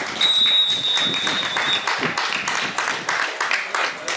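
Referee's whistle blown in one long blast, the full-time whistle, with clapping starting as it sounds and running on after it stops.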